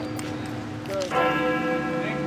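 Church bell ringing with steady, even overtones. The ring of an earlier stroke fades over the first second, and the bell is struck again about a second in and rings on.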